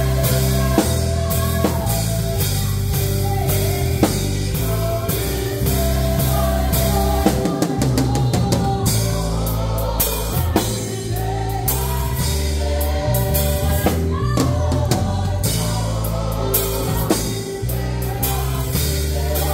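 A live gospel band, with drum kit, electric bass and keyboard, plays a steady beat under a praise team's singing. A deep bass line and regular drum hits run throughout.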